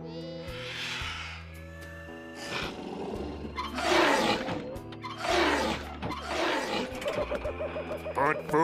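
Cartoon background music with a dinosaur roar sound effect: two long, rough roars, the first and loudest about four seconds in, the second a little later.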